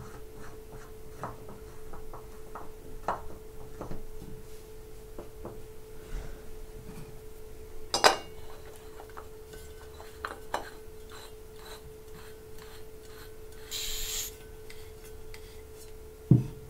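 Small clicks and rubbing of a metal pressure reducer being screwed by hand onto an aluminium test gas can, with a sharper click about eight seconds in and a brief hiss near the end, over a steady faint hum.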